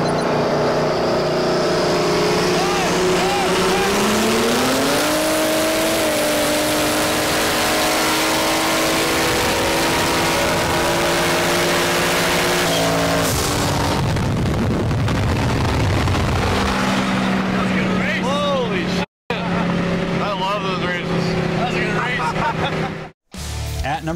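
High-horsepower street cars racing side by side on a highway, heard from inside one of the cars. The engine drone rises in pitch about four seconds in as they accelerate hard and stays high until about thirteen seconds in, then gives way to a broad rushing noise. Near the end the sound cuts out briefly twice, with voices over engine noise.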